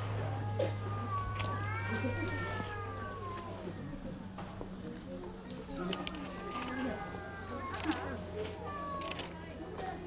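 Cats meowing while waiting for food: two long drawn-out meows that rise and fall, one about a second in and another past the middle, with shorter calls between.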